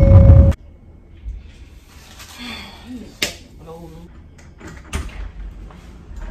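A loud sound cuts off suddenly about half a second in. Then an apartment front door is opened and shut, with sharp latch clicks about three seconds in and again about five seconds in, and a few fainter knocks of the handle.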